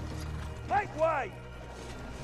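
Quiet film soundtrack: a low steady hum with two short calls, each rising then falling in pitch, about a second in.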